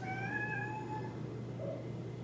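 A domestic cat meowing: one faint, drawn-out meow about a second long, fairly level in pitch.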